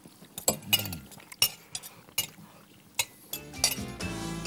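Knives and forks clinking and scraping on plates as two people eat pasta, in scattered sharp clinks. Music comes in near the end.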